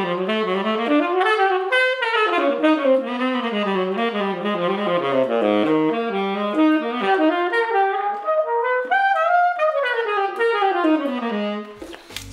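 Tenor saxophone played with a relaxed embouchure and no extra lip pressure (the 'F position'), running in quick, connected lines of notes that climb and fall several times, from low in the horn up into the middle register and back down, breaking off just before the end.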